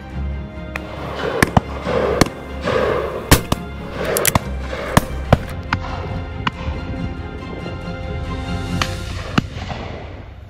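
Shotguns firing at driven birds: a dozen or so sharp reports at irregular intervals, some close and some farther off along the line. Background music plays underneath.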